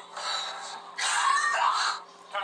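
A man retching and gagging after tasting food: a harsh, breathy heave, then a louder strained one about a second in.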